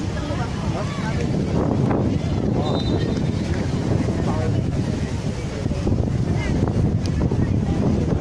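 Wind buffeting the microphone in a steady low rumble, with scattered voices calling out across the pitch.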